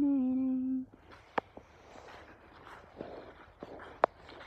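A person humming one long, steady, low note that stops just under a second in. After it, faint rustling with one sharp click about a second and a half in.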